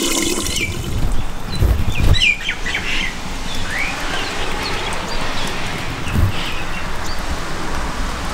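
Water running from a garden tap into a plastic watering can, stopping within the first second. Birds chirp for the rest of the time, with a few low thumps, the loudest about two seconds in.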